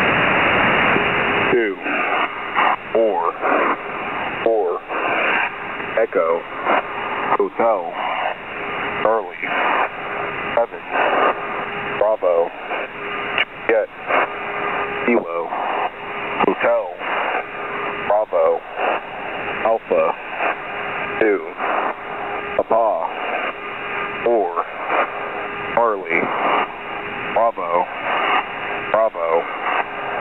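Shortwave single-sideband radio on the 8992 kHz HFGCS channel: a hiss of static for about the first second and a half, then a distorted, unintelligible voice transmission through the noise, with a steady whistle underneath.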